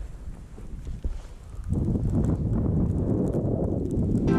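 Wind buffeting the camera microphone and skis sliding over snow during a downhill run. The rumble grows markedly louder less than halfway in.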